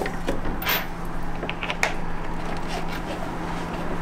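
Bamboo electric skateboard being handled on a tabletop: scattered light knocks, clicks and rubbing of the wooden deck and its parts. A steady low hum runs underneath.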